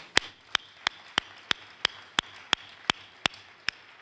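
Hand clapping: one pair of hands claps steadily and evenly, about three claps a second, in applause for the speaker who has just finished.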